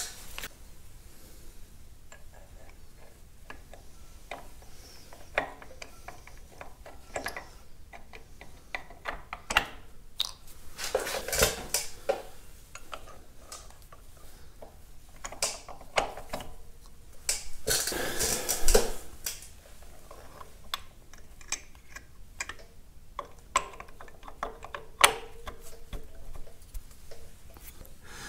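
Metal clinks, taps and scrapes of Caterpillar D2 fuel injection pump units being handled and set down by hand onto the cast-iron pump housing. There are scattered light clicks throughout and two louder bouts of clattering, about a third and two thirds of the way in.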